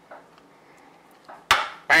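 A shot glass set down with a single sharp knock on a plastic cutting board about one and a half seconds in, after a stretch of faint handling sounds.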